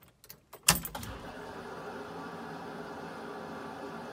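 A few small clicks and a sharp knock of the ignition key being worked, then a steady whir starts just under a second in as the truck's electrics come on at key-on.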